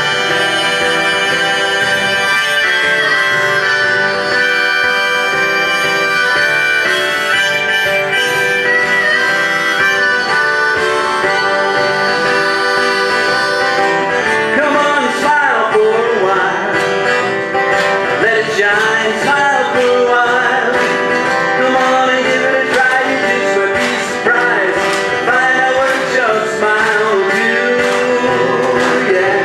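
Acoustic guitar strummed with a harmonica played over it from a neck holder, a folk-style song intro. About halfway through, the held melody notes give way to bending, wavering ones.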